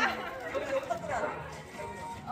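Faint chatter of voices in a hall during a lull in the talk on stage.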